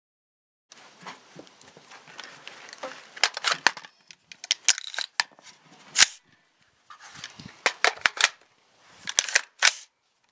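Sig Sauer 516 rifle handled to clear a failure to feed: a run of sharp metallic clicks and clacks as the magazine comes out and the action is worked, the loudest clack about six seconds in.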